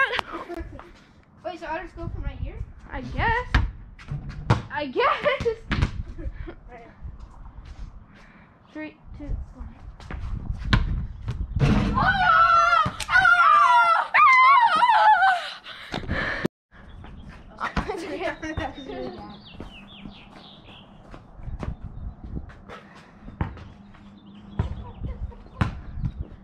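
Children shouting and yelling excitedly, loudest for a few seconds around the middle, with scattered thuds of a basketball bouncing before and after.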